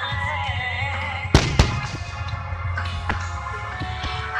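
Fireworks shells bursting over music: two sharp, loud bangs a quarter second apart about a second and a half in, and a lighter bang near the end. The music plays steadily throughout, with a low steady hum under it.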